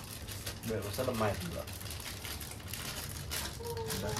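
Dry, papery skins of shallots and garlic crinkling and crackling as they are peeled by hand and with a small knife, with many small rapid clicks and taps.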